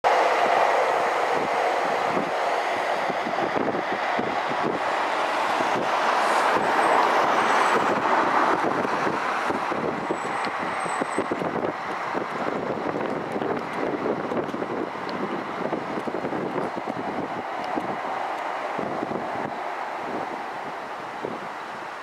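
Electric Tyne and Wear Metrocar trains running on the line: a steady rushing rumble with many small knocks, loudest several seconds in and then slowly fading.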